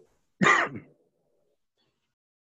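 One brief non-speech vocal sound from a person, about half a second long.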